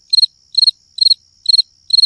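Cricket chirping sound effect laid over a time-skip title card: short high chirps about twice a second over a thin, steady high tone. This is the stock "crickets" gag for a silent wait.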